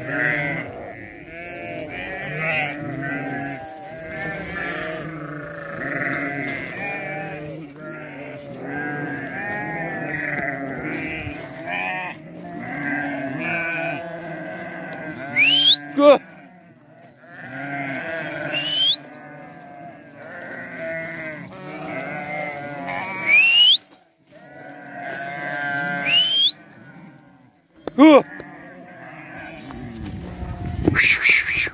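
A large flock of sheep and goats bleating without pause, many voices overlapping. In the second half, four short, sharply rising high-pitched calls cut through, and a man shouts once about halfway.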